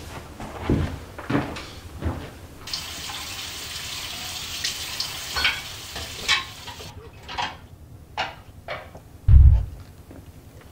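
Kitchen tap running into a sink, with a few dish clinks, shut off abruptly about seven seconds in. A few knocks come before it, and scattered clicks follow. Near the end there is a heavy low thump, the loudest sound.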